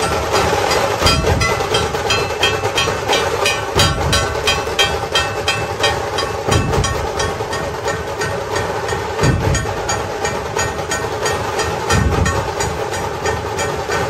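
Dhol-tasha drumming: rapid, sharp tasha strikes several times a second over heavy dhol beats that land every two to three seconds, with a dense, continuous din.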